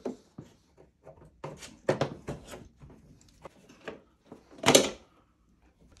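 A plastic bumper trim piece being pulled off a Ram TRX front bumper: a scatter of clicks and knocks as its rubbery clips are squeezed and worked loose, the loudest a brief snap about three-quarters of the way in.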